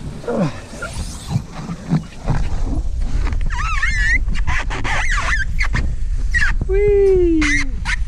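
A ride down a plastic playground slide: rustle, knocks and a low wind rumble on the microphone. Over it come a small child's high squealing cries, one about halfway through and a longer falling one near the end.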